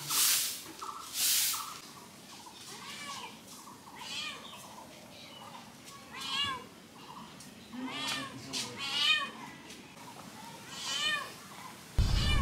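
A soft grass broom swept twice over a packed-dirt yard, about a second apart. Then comes a run of short, high, rising-and-falling animal calls, several in quick clusters, that sound like a cat meowing.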